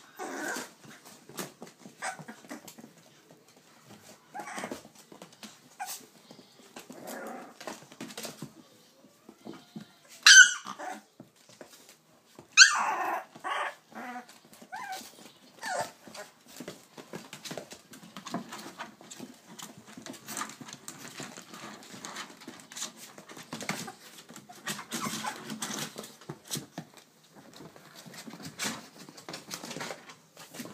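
Three-week-old American Bully puppies playing: small growls and whimpers with light scuffling throughout, and two loud, high-pitched yelps about ten and thirteen seconds in.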